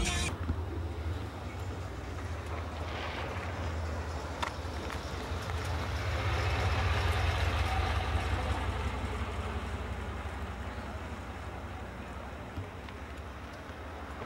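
Car engines rumbling, with a hiss of passing traffic above. It swells to its loudest about halfway through, as a car goes by close, then eases off. There is one sharp click early on.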